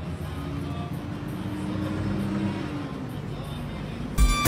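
Street noise: a steady low hum like a running vehicle, with faint music and a few held tones over it.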